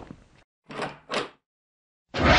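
Intro sound effects: one sharp knock, then two short swishing swells close together, each rising and falling.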